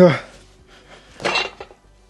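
Metal weight plates on a barbell clinking and clattering as they are handled, one short metallic clatter a little over a second in, followed by a few small clicks.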